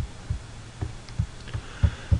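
Soft low thumps, irregular but about two a second, over a steady low hum.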